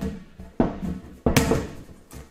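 A freshly inflated, taut vinyl exercise ball being handled and slapped, giving a few sharp, hollow thumps that ring briefly.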